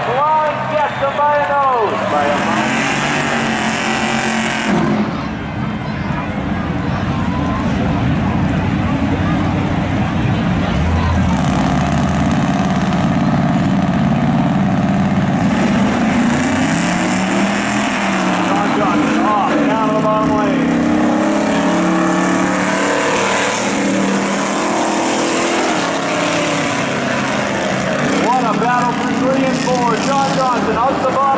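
Street-car engines racing two at a time, running hard with pitch sweeping up and down as they rev and shift, loudest near the start, around two-thirds of the way in and near the end.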